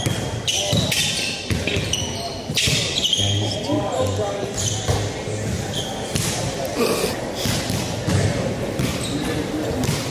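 A basketball bouncing repeatedly on a hardwood gym floor, with short high squeaks and people's voices echoing in the large hall.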